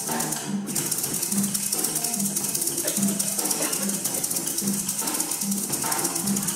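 A maracas solo in Venezuelan style: a pair of maracas shaken in a fast, dense, even rhythm, with low bass notes repeating underneath.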